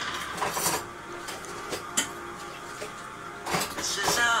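A few sharp clicks and knocks, about a second or more apart, over faint music in a lull between sung lines.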